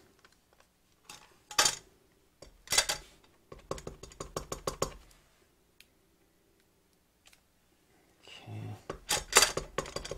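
Quick taps and clicks of a clear acrylic stamp block and an ink pad on a desk as a rubber stamp is inked and pressed onto paper. There are two single knocks, then a run of rapid taps a few seconds in, a pause, and another run of taps near the end.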